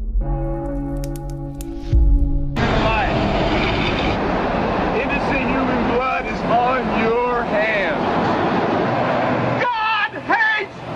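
A held electronic chord tone with glitchy clicks, ending in a low thump, is a transition sound effect. It cuts to camcorder-recorded roadside sound: traffic noise with people's voices talking over one another.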